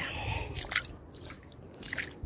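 Footsteps splashing and squelching through shallow water over wet sand: short watery splashes about half a second in and again near the end, over a low rumble.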